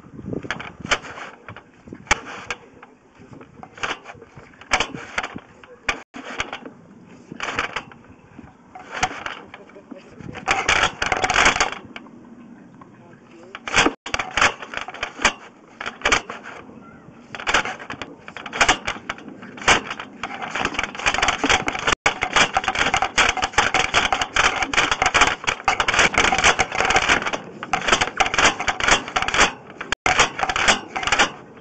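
Sewer inspection camera's push cable being fed down a drain pipe, with irregular clicking and rattling. The clatter grows denser and louder about two-thirds of the way in.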